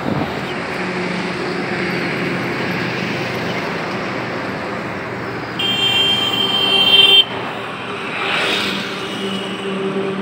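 Tata LPT 1109 cargo truck's diesel engine running steadily, with road noise. A vehicle horn sounds for about a second and a half around the middle.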